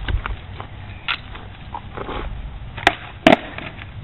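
Skateboard wheels rolling over rough asphalt, a steady low rumble. Two sharp clacks come close together near the end.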